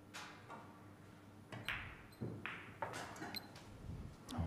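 A cue tip strikes the cue ball right at the start. Over the next few seconds come several faint, sharp clicks of the balls hitting one another and knocking off the cushions of a Chinese eight-ball table.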